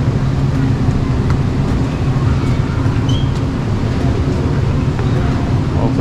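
Steady low rumble and hum of a large store's background noise, with no single event standing out.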